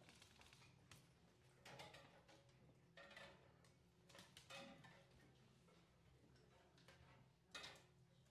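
Near silence: faint room hum with a few soft knocks and clicks as percussionists settle in at their instruments. The sharpest knock comes near the end.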